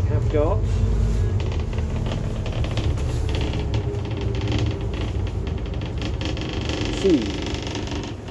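Cabin noise of a Scania N230UD ADL Enviro 400 double-decker bus on the move: the steady low running note of its five-cylinder diesel, which drops in its deepest part about a second in, with frequent light rattles from the bodywork.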